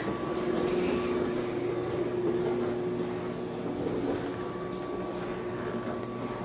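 A steady machine hum with a few faint, even-pitched tones in it, held at one level throughout.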